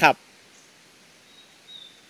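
A bird calling faintly near the end: a thin high whistle, held briefly and then sliding down in pitch.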